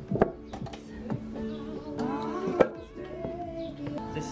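Rubber-coated weight plates knocking against each other as they are slid onto a barbell, with two sharp clanks, one just after the start and one about two and a half seconds in, over background music.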